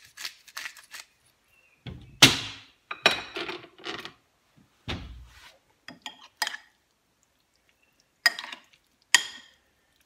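A pepper grinder clicking briefly at the start, then a metal spoon knocking and scraping against a ceramic bowl while juicy diced cherry tomatoes are stirred. There are scattered clinks throughout, with two sharp knocks near the end.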